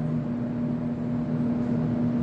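A steady low hum holding a constant pitch.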